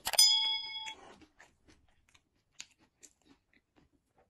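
A bell-like notification ding, the sound effect of a subscribe-and-bell overlay, rings out sharply at the start and dies away within about a second. After it come only faint, scattered chewing clicks.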